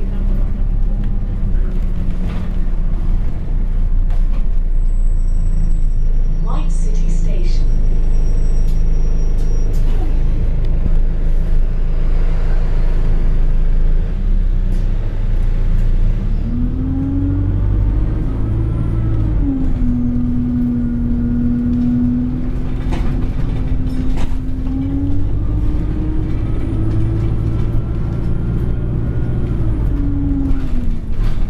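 Alexander Dennis Enviro200 single-deck bus heard from inside the saloon, its engine and drivetrain running steadily. About halfway through a whine rises in pitch, holds level for several seconds, then rises again as the bus picks up speed.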